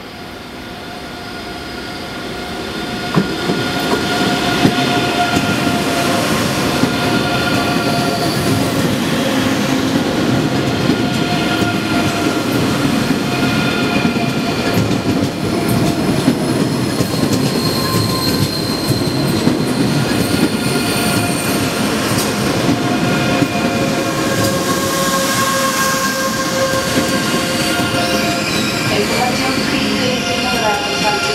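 ICE 3 high-speed train pulling into the station, slowing. The sound grows louder over the first few seconds as it nears, then holds as a steady rolling rush with several high squealing tones along the platform.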